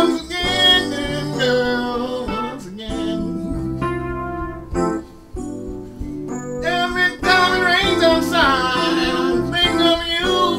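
A man singing to his own electronic keyboard accompaniment, with a brief lull about halfway through.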